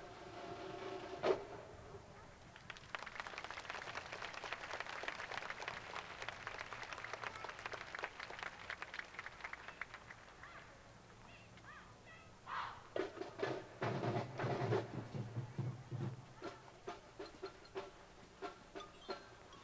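A marching band's final held chord ends with a sharp hit about a second in, followed by crowd applause for several seconds. From about twelve seconds in, the band's drums and horns start up again and settle into a steady marching drum beat of about two strokes a second.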